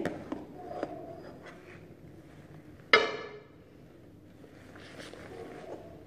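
A single sharp clink with a short ring about halfway through, as a small ceramic bowl is knocked down onto the table to stamp paint onto paper.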